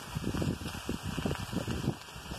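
Food frying in a cast iron skillet over an open flame, with irregular crackles and pops and the pan being handled.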